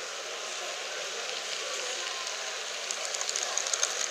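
Model train, an E.636 electric locomotive hauling passenger coaches, running along layout track with a steady running noise; from about three seconds in, as the coaches pass close, a rapid clicking of wheels over the rail joints.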